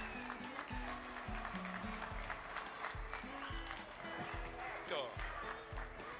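Background music with a steady bass-drum beat and a stepping bass line.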